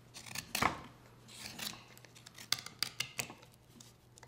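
Hook knife carving into a wooden spoon blank: short scraping cuts and sharp snicks as the blade slices shavings out of the bowl, a quick run of several cuts in the second half.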